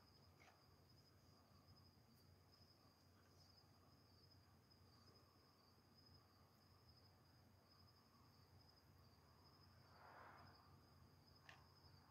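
Near silence outdoors at night, with faint, steady, high-pitched chirring of crickets and a brief soft hiss about ten seconds in.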